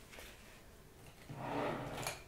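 Quiet room tone, then about a second and a half in a short, low, held voice sound like a hesitant 'euh'.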